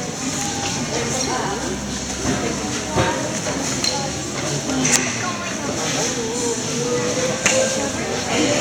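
Indistinct chatter of many people in a large hall, with a few sharp knocks, the clearest about three and five seconds in.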